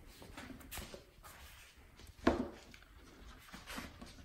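Light scraping and tapping of a wooden stick stirring resin in a paper cup, with one sharp knock about two seconds in.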